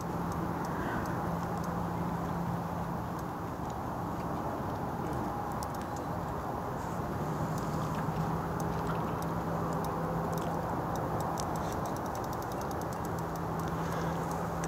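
Fishing reel ticking quickly and faintly as it is wound in while a hooked fish is played on a bent rod, over a steady low hum and rumble.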